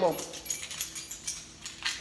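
Light metallic jingling and clinking, a run of small irregular clinks.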